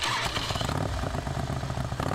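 Motorcycle engine started from the handlebar start switch, catching at once and then running with a rapid, steady low beat.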